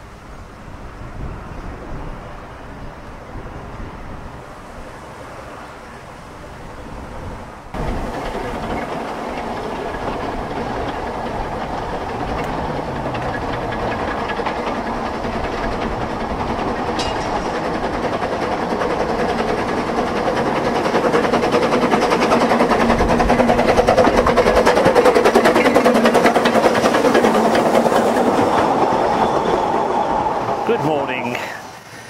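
Narrow-gauge passenger train running past, its carriage wheels clacking over the rail joints. It gets louder as the carriages draw close and roll by near the end.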